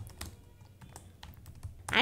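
Computer keyboard typing: a quick, irregular run of soft key clicks as a word is typed.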